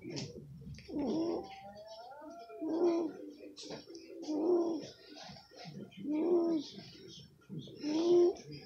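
A voice making a series of drawn-out wordless calls, five of them about two seconds apart, each rising and then falling in pitch, with light handling clicks in between.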